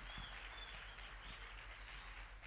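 Faint, steady applause from a congregation clapping.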